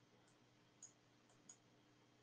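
Near silence: room tone with three faint clicks, a computer mouse advancing the presentation slides.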